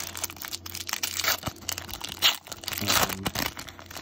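Foil wrapper of a baseball card pack being torn open and crinkled by hand: a run of crackles and rips, the sharpest just over two seconds in.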